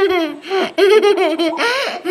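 Young girl laughing, high-pitched, in several quick bursts.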